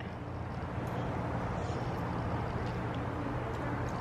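A steady low hum with faint, even noise behind it.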